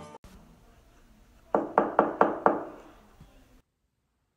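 Four quick knocks on a door, about a quarter second apart, starting about a second and a half in.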